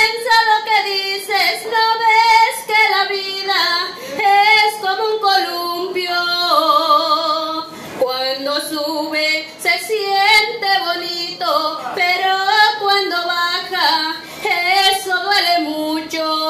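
A woman singing solo into a hand-held microphone, karaoke-style, with wavering held notes between short breaths.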